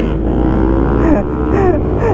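Kawasaki Ninja H2's supercharged inline-four engine running at steady low revs as the bike rolls along, a steady low hum.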